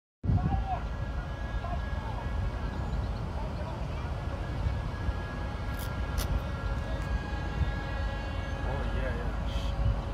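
Wind rumbling on the microphone over faint distant traffic noise, with a thin steady hum underneath.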